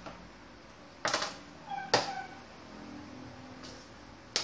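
Two sharp knocks about a second apart against a small stainless-steel bowl as an egg is handled in it. The second knock leaves a short metallic ring.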